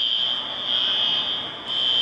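A steady high-pitched whine with a hiss beneath it.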